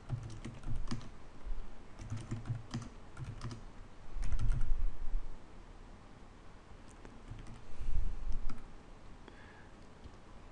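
Typing on a computer keyboard in short runs of key clicks as shell commands are entered, with two louder low rumbles about four and eight seconds in.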